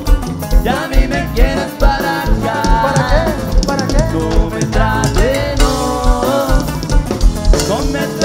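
Norteño cumbia band playing live: saxophone and accordion carry the melody over a drum kit and bass keeping a steady beat.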